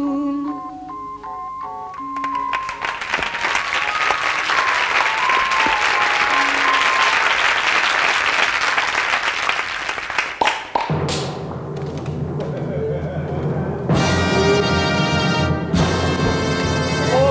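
Studio audience applauding for about eight seconds as the song's last accompanying notes fade. About eleven seconds in, the band starts playing again, louder for the last couple of seconds.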